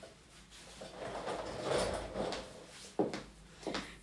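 Handling noise: fabric rustling, then a sudden knock about three seconds in and a smaller one shortly after.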